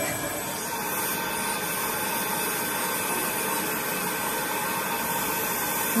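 A steady whooshing hum of running machinery with a faint high whine that holds through the whole stretch.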